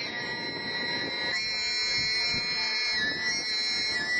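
A boy singing Mongolian khoomei throat singing: a low drone and a high, whistle-like overtone sounding at the same time. A second whistling overtone at a lower pitch comes in about a second and a half in and is held to the end.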